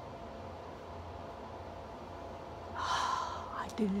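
A woman's sharp gasp, a short breathy intake about three seconds in, the sound of sudden realisation, over a steady low hum.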